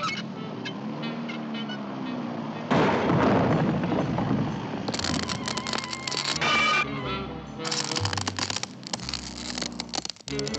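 Cartoon underscore with sound effects: a sudden loud crash about three seconds in, then two long spells of sharp cracking and crumbling as the wrecking ball and the crane break apart.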